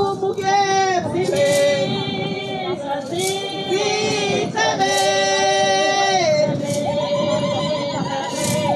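A group of young women singing together in unison, holding long notes that slide down at the end of each phrase.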